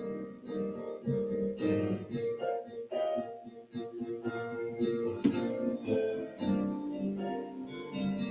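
Electronic keyboard playing the introduction to a gospel song: held chords with single notes moving over them.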